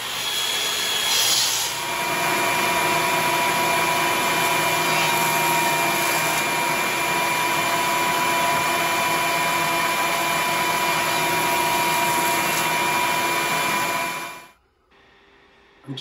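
Benchtop jointer running with a steady motor whine while a board is fed across its cutterhead, planing the edge of a wooden skirt piece. It cuts off suddenly near the end.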